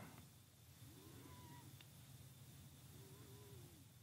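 Near silence: faint room hum, with two faint short wavering calls, one about a second in and another about three seconds in.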